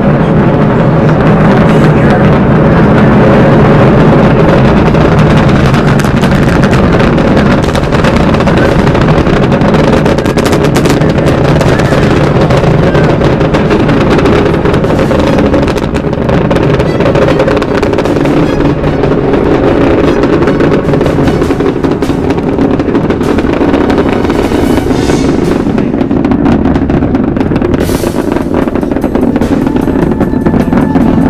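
Space Shuttle Discovery's launch roar from its solid rocket boosters and main engines, heard from the spectator site as a loud, continuous rumble full of crackle.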